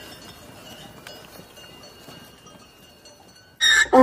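A donkey bursts into a loud bray near the end, its pitch sliding as it calls. Before that there is only a faint, steady outdoor background.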